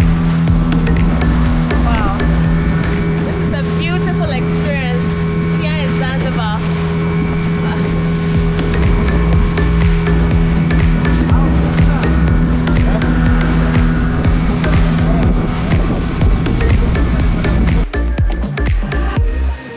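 Motorboat engine running steadily at speed, a constant low drone, with background music over it.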